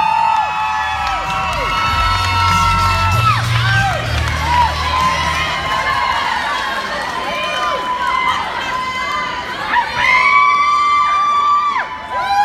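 Crowd of cheerleaders and spectators screaming and cheering, many long high yells overlapping and dropping off at their ends, with a fresh swell of yells about ten seconds in.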